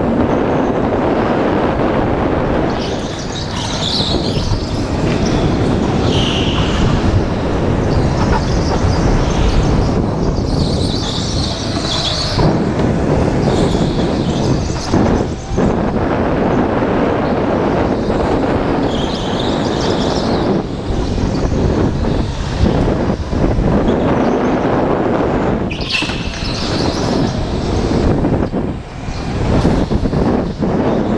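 Go-kart running at racing speed, engine noise and wind rushing over the kart-mounted camera's microphone throughout, with short high-pitched squeals several times as the tyres slide through the corners on the concrete track.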